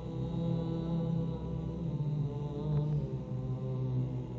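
A deep male voice singing slow, long-held notes in a chant-like line, with a few changes of pitch.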